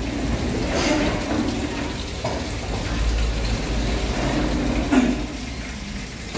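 Steady rushing noise with a low rumble, and a car door, the Toyota 86's driver's door, shutting with one short thud about five seconds in.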